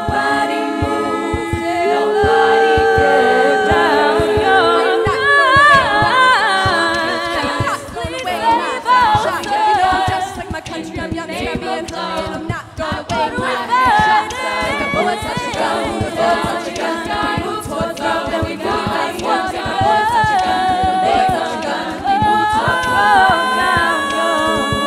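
All-female a cappella group singing in close harmony: held chords with a lead line moving over them, and a steady vocal-percussion beat underneath.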